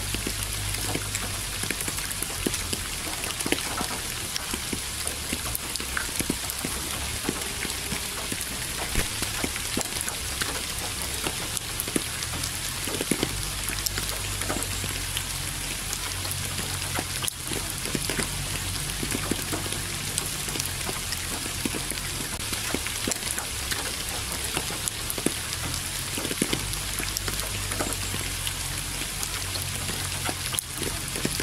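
Steady rain falling, an even hiss dotted with many close individual drop hits, over a low hum.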